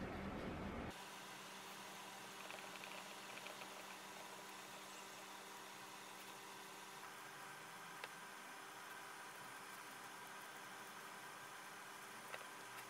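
Faint, steady hiss with a louder noise that cuts off abruptly about a second in. Over it come faint crinkles and one light tick as gloved hands press crumbly almond-flour tart dough into a fluted metal tart tin.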